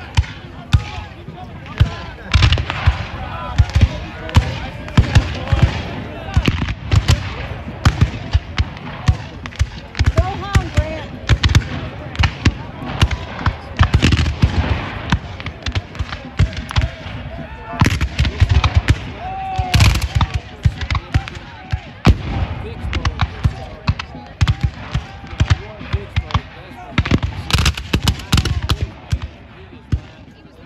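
Black-powder rifle-musket fire from reenactors' battle lines: many irregular, sharp shots through the whole stretch, with some heavier reports that fit field cannon.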